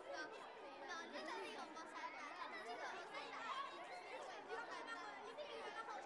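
Many children's voices chattering and talking over one another, a steady babble that stops abruptly just after the end.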